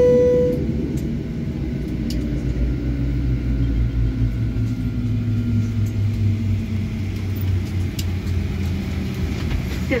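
A single cabin chime sounds once at the start and fades quickly, the seat-belt sign going off at the gate. Under it the airliner's jet engines hum low and steady and slowly wind down after shutdown.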